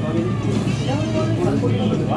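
Indistinct voices and background music over a steady low hum.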